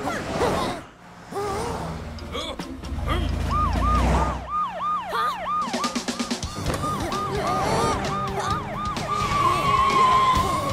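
Cartoon vehicle sound effects: a low engine rumble, then a rapid siren-like whooping of about three rising-and-falling tones a second, which settles into one held tone near the end.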